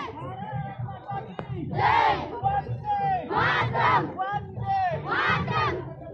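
A marching column of cadets shouting slogans together in loud, repeated group calls, four shouts a second or so apart over a steady low background hum.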